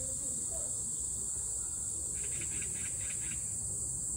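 Steady high-pitched drone of insects in a summer garden, with a short run of rapid chirps, about eight a second, from about two seconds in.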